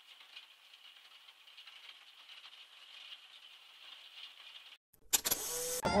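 Faint crackling hiss of a degraded analog video recording, with a narrow band of high-pitched noise. It drops out just before five seconds in, then a sudden loud burst of noise, and a man's voice over music begins near the end.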